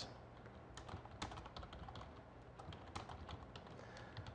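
Faint typing on a computer keyboard: a run of irregular key clicks as a line of code is entered.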